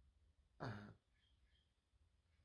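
Near silence, broken just over half a second in by one short throat sound from a man, like a brief throat clear.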